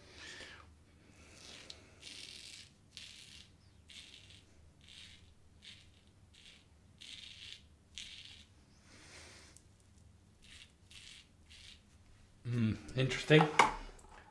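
Safety razor blade scraping through lathered stubble on the cheek in many short strokes, about one or two a second.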